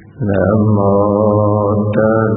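A man's voice chanting Buddhist Pali verses, beginning about a fifth of a second in and holding one long, steady low note.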